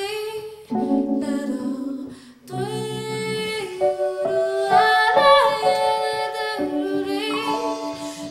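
A woman singing long wordless notes with a wavering pitch, gliding between notes and stopping briefly twice, with other sustained parts in harmony beneath her.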